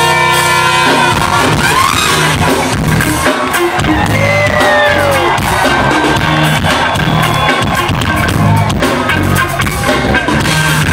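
Live brass-rock band playing loudly: trumpet lead with bending notes over electric guitar, electric bass, drum kit and saxophones, heard from within the audience in a large hall.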